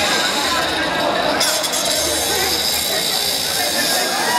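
Spectators talking and calling out over the whir of small electric drive motors as two wired combat robots push against each other.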